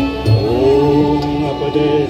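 A violin ensemble playing Indian classical-style music with a man singing a melody through a microphone and PA. Tabla accompanies, with a low drum stroke about a third of a second in.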